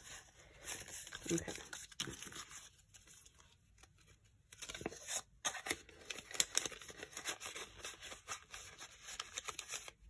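Paper banknotes and a paper envelope rustling and crinkling in quick bursts as a small stack of bills is handled and slid into the envelope, busiest in the second half.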